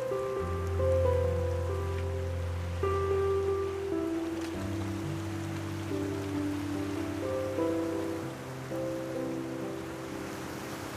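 Slow, calm background music of held notes that change every second or so over a long low bass note, with a steady hiss of noise beneath.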